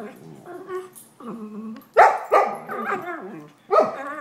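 Puppies barking during rough play: softer pitched calls in the first two seconds, then three loud barks, two close together about two seconds in and another near the end.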